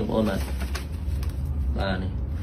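A man's voice in short utterances, at the start and again near the end, over a steady low hum.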